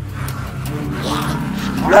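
A cartoon character's voice gives a short rising yelp near the end, over a low background hum.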